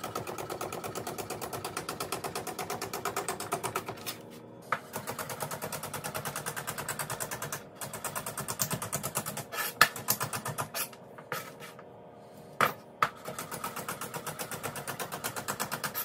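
A chef's knife chopping rhubarb stalks on a plastic cutting board: rapid, even knocks of the blade on the board in runs of a few seconds, with short pauses and a few single louder taps between runs.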